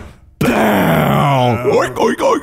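A man's voice holding a long, drawn-out groan that slides steadily down in pitch. Near the end a fast warbling, wavering tone takes over.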